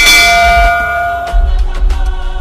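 A bell-chime sound effect struck once at the start, ringing out and fading over about a second, over background music with a steady bass.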